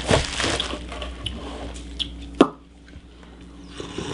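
Hot chocolate being slurped in sips from mugs, with one sharp click about two and a half seconds in.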